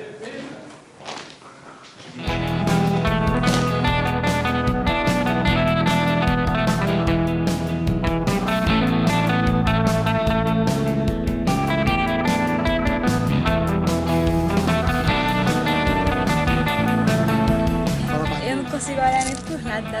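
Background music led by guitar, coming in about two seconds in after a brief quieter moment, then playing steadily.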